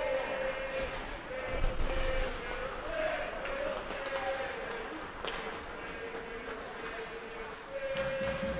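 Live ice hockey game sound: arena crowd noise with a long, wavering held tone from the stands, and a few sharp clacks of sticks and puck on the ice.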